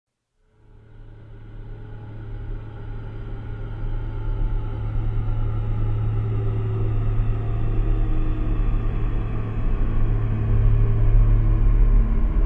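Dark atmospheric intro to a death metal track: a low, steady rumbling drone that fades in from silence about half a second in and swells slowly louder.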